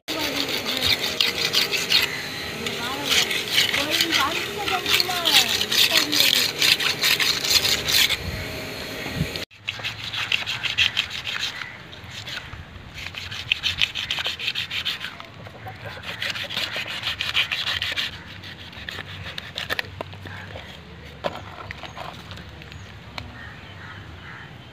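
A knife scraping the scales off a large carp, in repeated rasping bursts of strokes, each run lasting a second or two. In the first nine seconds, before a cut, voices and calls sound over a louder rasping noise.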